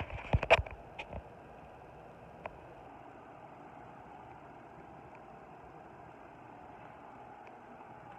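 A few sharp knocks of the phone being handled in the first second, then steady faint room noise, a low hiss and hum.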